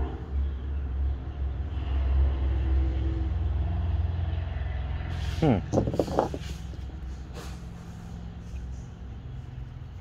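A vehicle engine running nearby: a low, steady sound, loudest in the first four seconds and then fading away.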